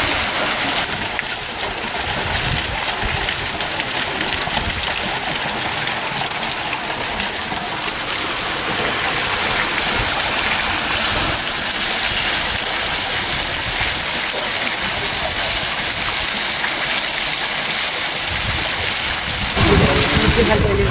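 Steady rushing outdoor noise, a hiss with occasional low rumbles underneath.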